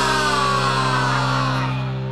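The intro theme song ends on a long held chord, with a pitch sliding downward over it as the sound slowly gets quieter.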